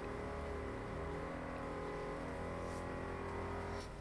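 A neighbour's electric power drill running steadily, heard from next door as a sustained motor whine made of several steady tones, shifting slightly in pitch about a second in.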